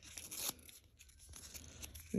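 Faint rustling of a paper tag being handled, strongest in the first half second, then a few soft scattered ticks.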